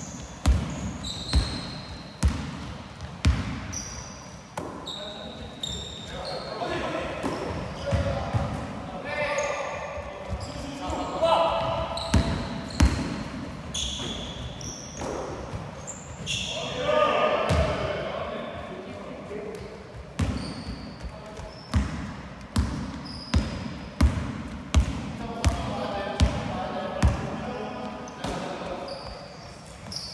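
A basketball being dribbled on a hardwood gym floor, with sharp bounces about once a second and the echo of a large hall. Short high sneaker squeaks come in between, and players call out during play, loudest near the middle.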